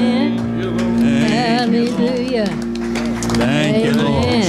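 Live church praise band playing, with sustained keyboard chords under a group of voices singing with vibrato.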